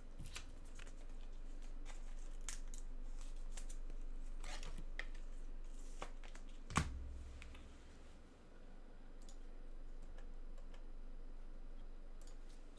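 Trading cards and their packaging or plastic holders being handled on a desk. There are scattered short clicks and rustles, and the loudest is a sharp click with a low thump about seven seconds in.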